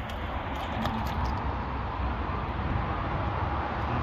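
Steady outdoor background noise with a low, uneven rumble underneath and a few faint clicks.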